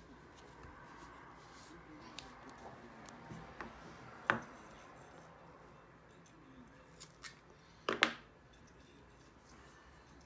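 Scissors snipping grey duct tape on foam backer rod: a few short sharp snips, one about four seconds in and the loudest pair near eight seconds, over quiet handling of the tape.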